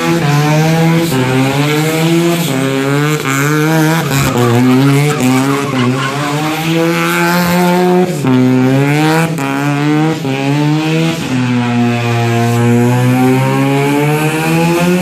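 Rotary-swapped Toyota KE25 Corolla's 13B bridgeport turbo rotary engine held at high revs during a burnout, its pitch wavering as the throttle is worked, over the squeal of the spinning rear tyres. The revs drop sharply about eight seconds in and again about eleven seconds in, then climb back.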